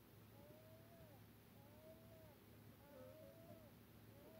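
Faint meowing, repeated about once a second, each call rising and then falling in pitch.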